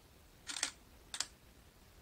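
Digital SLR shutter firing to take a photo in live view: two mechanical clacks about two-thirds of a second apart.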